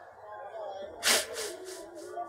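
Men sobbing in a crowd: a faint wavering cry, then a sharp, loud sobbing breath about a second in, followed by a few shorter ones.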